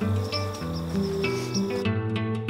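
Background music of steady held notes over faint outdoor insect sound. The outdoor sound cuts off near the end while the music carries on.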